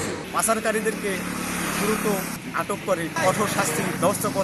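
Speech in short phrases over the steady low hum of a running vehicle engine.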